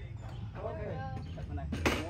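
A single sharp knock on the gazebo's frame near the end, amid people talking.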